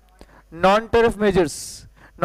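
A man speaking a short phrase, starting about half a second in and ending with a brief hiss.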